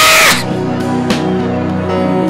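A woman's loud, held cry through a microphone, cutting off about a third of a second in. After it, background music of steady held notes continues, with faint voices praying.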